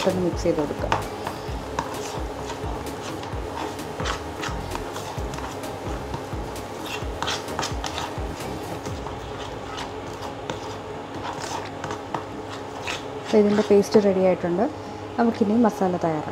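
A steel spoon stirring and scraping a thick chili-spice marinade paste in a bowl, with many light clicks of the spoon against the bowl's sides. A voice is heard briefly near the end.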